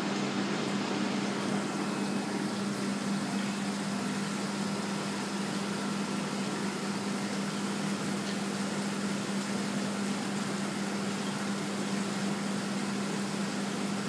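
Steady hum of running machinery, a constant low tone over a faint even hiss.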